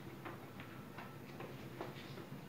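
A cloth duster wiping a whiteboard: faint, quick rubbing strokes, about two or three a second, with a brief faint squeak.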